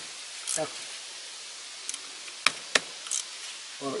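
A few sharp, separate clicks of a 12 mm socket wrench working on an engine bolt, two of them close together about halfway through; the wrench is being turned the wrong way, so the bolt is not loosening.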